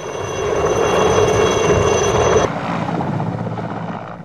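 HAL-built Alouette III helicopter in flight: its turbine whine, several steady high tones, over the rush of rotor and engine noise. About two and a half seconds in, the whine stops abruptly and a duller helicopter rush carries on.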